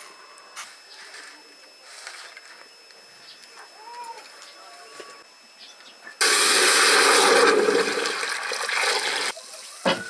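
Water poured from an aluminium pot into an aluminium pressure cooker: a loud, steady splashing pour that starts suddenly past the middle and lasts about three seconds. A short knock follows near the end.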